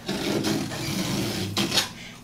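Utility knife slicing through the fabric backing of a folded linoleum sheet along its score line: a steady rasping cut for about a second and a half, ending in a short click.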